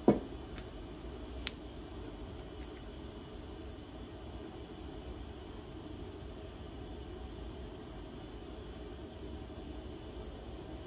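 Small metal pieces knocking together on a workbench: a dull knock, a faint click, then a sharp metallic clink with a brief high ring about a second and a half in. After that there is only a steady low room hum.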